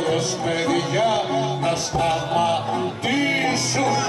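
Live Greek folk music for the kagkelari round dance: a violin plays a wavering, ornamented melody with singing over the band.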